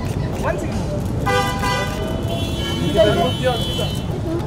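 Vehicle horn honking about a second in, a short blast followed by a longer, higher-pitched horn tone, over the shouts of photographers.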